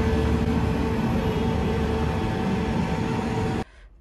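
Steady vehicle noise: a deep rumble with a constant engine-like hum, cutting off suddenly near the end.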